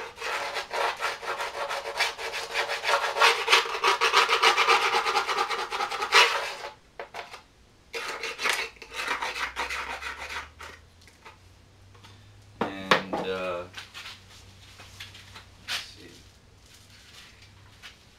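A hand tool scraping quickly back and forth along the edge of a fiberglass composite fuselage, trimming off the mould flash. The strokes come fast and loud for about the first six seconds, then only a few scattered scrapes follow.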